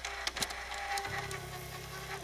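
Reel-to-reel tape recorder's transport running after its key has been pressed: a steady mechanical whir, with a low hum that comes in about a second in, under a few held tones.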